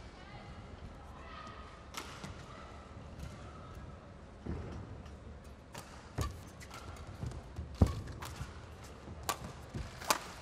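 Badminton rally: sharp cracks of rackets striking the shuttlecock several times in the second half, the loudest about eight seconds in, with thuds of footwork on the court. A low hall murmur fills the first few seconds.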